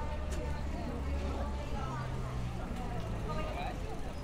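Outdoor street ambience: indistinct voices of passers-by chatting, over a low vehicle rumble that is strongest in the first three seconds and then fades.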